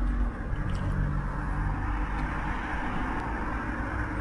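Steady motor-vehicle noise: a low rumble under an even hiss. A low hum in it fades out a little under halfway through.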